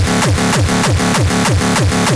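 Frenchcore track with a fast, even kick drum, about four kicks a second, each falling in pitch, over a sustained low synth. No vocal sample in this stretch.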